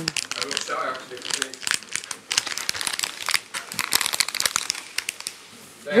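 Close, irregular crinkling and rustling: a dense run of small crackles that dies away about half a second before the end.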